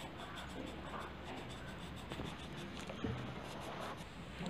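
A green coloured pencil scratching faintly on paper as the tail is shaded in with quick, repeated strokes.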